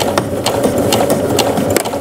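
Domestic sewing machine with a denim needle running steadily, stitching through layered denim patchwork with a rapid, even ticking of the needle.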